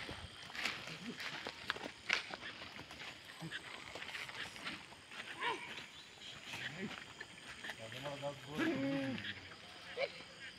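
Goats grazing close by, with sharp clicks and snaps of hooves and torn plants in the first couple of seconds. A short call about halfway through is followed by a drawn-out, wavering goat bleat near the end.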